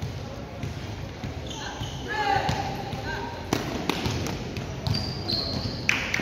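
Basketballs bouncing on a hard gym floor, with a few sharp thuds in the second half, and children's voices calling out.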